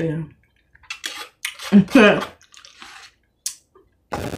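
Close, wet eating and mouth sounds as a spoonful of food is taken from a small cup and chewed, in short scattered bursts. A brief voiced murmur comes about two seconds in.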